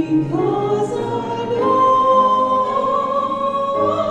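A woman singing solo, holding one long, slightly rising high note from about a second and a half in.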